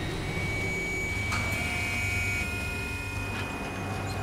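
Drill rig running with a steady low hum. About a second in there is a click, and a steady high whine comes in as the drill starts up.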